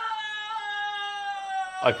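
One long, drawn-out, high-pitched "Oh!" called out by a character in the drama, held for nearly two seconds and sinking slowly in pitch. A man starts speaking just as it ends.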